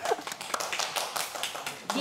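Brief applause: hands clapping in quick irregular strikes, with laughter and voices over it.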